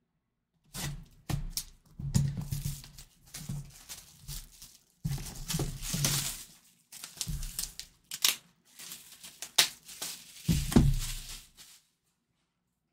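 Plastic shrink wrap being slit and torn off a cardboard box and crumpled by hand, crinkling in irregular bursts with sharp crackles.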